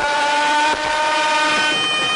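Nadaswaram, the South Indian double-reed temple pipe, holding one long bright note that bends slightly, moving to a higher note near the end.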